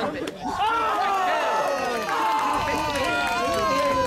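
People talking close by, several voices overlapping without a break.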